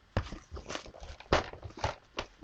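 Handling noise from a small handmade book and its sliding tassel: a run of light knocks and rustles, with about four sharper knocks.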